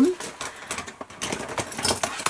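Paper being handled and slid about on a craft table: a quick, irregular run of rustles, small taps and scrapes.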